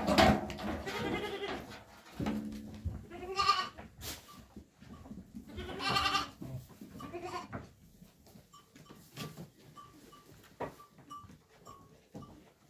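Goats bleating: about half a dozen calls in the first seven and a half seconds, then quieter.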